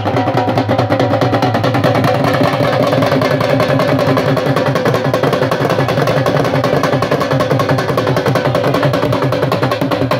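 Two dhols beaten together in a fast, unbroken dhamal rhythm, with a steady droning pitch running through the drumming.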